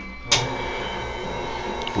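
KitchenAid stand mixer switched on with a click about a third of a second in, its motor then running steadily at low speed as it starts mixing flour into the butter dough.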